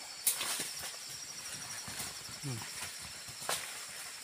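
Scattered sharp snaps and crackles in dry leaf litter and brush, the strongest just after the start, as a large snared wild boar thrashes against the snare.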